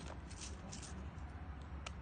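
Fishing tackle being handled at a tackle box: scattered rustles and light clicks, with one sharp click near the end, over a steady low rumble.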